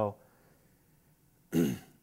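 A man clearing his throat once, a short rasp about one and a half seconds in, after a quiet pause of room tone.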